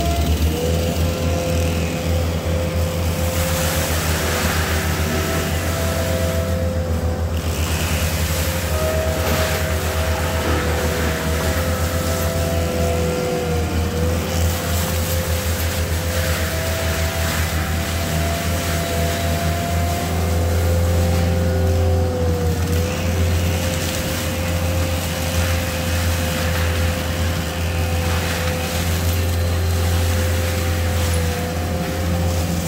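ASV RT-120 compact track loader running hard to drive a Fecon Bullhog forestry mulcher head into brush and vines: a steady engine drone with a high whine from the mulcher drive that sags briefly a few times under load, and surges of grinding noise as the head chews through brush.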